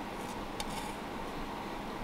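Pot of sassafras root tea simmering on an electric stove burner: a faint steady low noise with a few soft ticks of bubbling.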